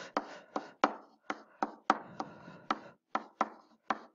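A stylus clicking and scratching on a pen tablet's writing surface as short figures are written out by hand. About a dozen sharp taps come at roughly three a second, with soft scratches between them.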